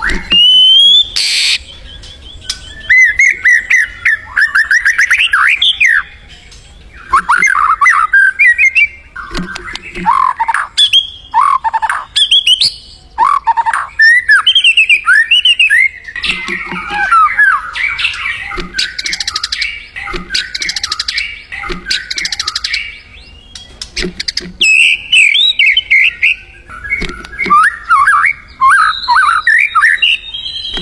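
White-rumped shama (murai batu) singing: a long run of varied, loud whistled phrases, quick trills and chattering notes, broken by short pauses between phrases.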